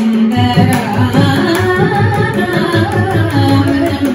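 Carnatic vocal music in raga Abheri, Adi tala: a woman's voice singing with violin accompaniment and mridangam drum strokes keeping a steady rhythm.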